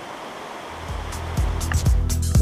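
Rushing water of a rocky creek, then background music with a heavy bass and a steady beat comes in about a second in and becomes the loudest sound.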